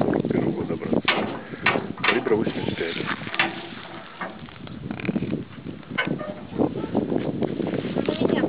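Indistinct talking of people outdoors, with a handful of sharp clicks or knocks scattered through it.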